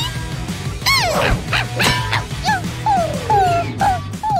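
A cartoon animal voice giving short high yelps, each falling in pitch, with a quick run of them in the second half, over upbeat background music.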